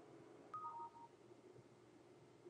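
A computer's new-email notification chime: two short electronic beeps about half a second in, a higher note followed by a lower one, over near silence.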